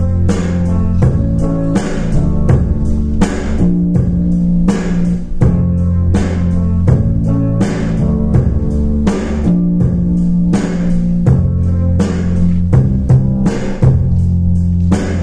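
Recorded instrumental backing track of a slow pop ballad playing over stage speakers: a steady beat with bass and chords, and no voice.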